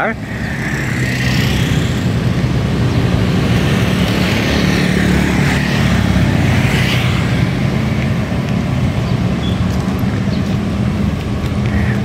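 Small motor scooters passing on the street, their engines and tyres running by as steady traffic noise, swelling as one goes past close in the middle.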